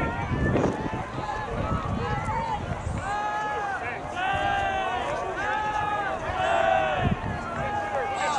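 Voices shouting across an open playing field: a series of long, high, held calls, each about a second, starting about three seconds in. Wind buffets the microphone with a low rumble, strongest in the first few seconds.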